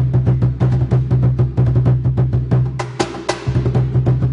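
Peruvian cajón played by hand in a fast, continuous rhythm: deep bass strokes under quick, sharper slaps, with two louder slaps about three seconds in.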